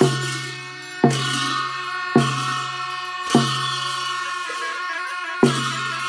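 Tibetan Buddhist monastic ritual music: a large drum struck with a long curved beater together with clashing cymbals, five strikes about a second apart, each booming and ringing on, over steady sustained horn tones.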